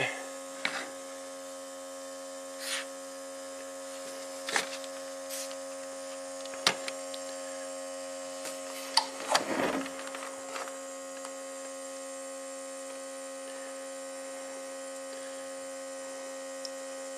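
Small battery-powered smoke machine's air pump running with a steady hum, holding pressure inside a headlight housing for a leak test. A few brief handling clicks and rustles sound over it.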